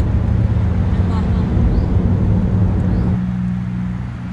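Steady in-cabin road noise from a car cruising on a highway: a low rumble of engine and tyres with a constant hum. The rumble thins and drops slightly about three seconds in.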